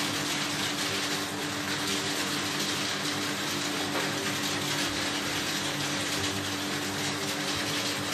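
Jets of a whirlpool bathtub running: a steady rush of churning water with the circulation pump's even hum underneath.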